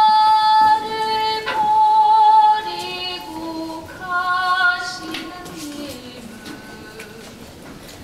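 A woman singing solo in long, high held notes, the melody stepping down and then rising again with a wavering vibrato about halfway through, growing fainter toward the end.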